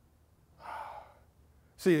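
A man's short, audible breath in, about half a second long, without any voiced tone, followed near the end by the start of a spoken word.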